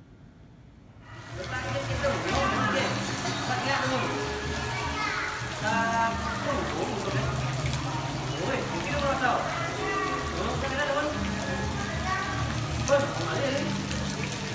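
Many children's voices chattering and calling over background music with steady low notes. It starts suddenly about a second in, after near-quiet room tone.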